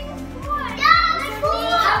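Background music with a steady beat, overlaid from about half a second in by excited, high-pitched children's and women's voices calling out.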